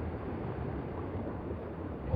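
Steady, quiet outdoor background rush with a low rumble underneath, with no distinct event standing out.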